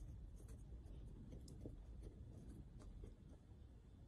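Near silence: faint, scattered scratchy ticks of a small screwdriver turning the calibration trim screw on a fuel level converter's circuit board, over a low room rumble.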